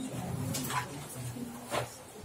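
Whiteboard eraser wiping across the board in short swipes, two of them in about two seconds, over a faint low hum.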